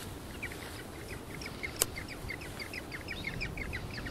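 A small bird chirping: a quick, even run of short high chirps, about five a second, over a low wind rumble, with one sharp click about two seconds in.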